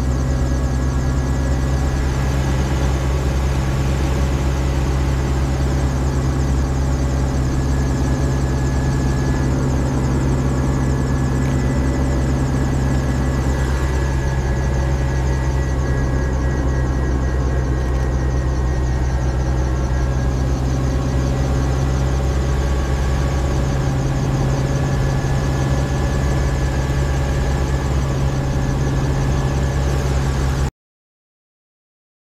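Small training helicopter's engine and rotor running steadily on the ground during warm-up before takeoff, heard from inside the cabin.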